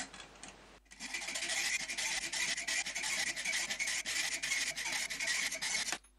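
Hacksaw cutting through a 3 mm metal rod clamped in a bench vise, with fast back-and-forth rasping strokes that start about a second in and keep going steadily.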